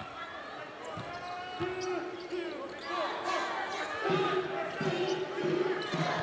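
Basketball being dribbled on a hardwood court in a large arena, with voices in the background that grow louder about four seconds in.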